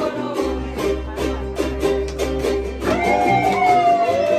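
A group of acoustic guitars and smaller guitar-like string instruments strumming a song together in a steady rhythm, with voices singing along. About three seconds in, a voice glides up into one long held note.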